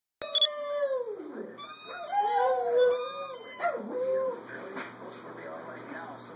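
Small dogs howling: about three drawn-out howls in the first four seconds, each sliding down in pitch, then quieter whining to the end.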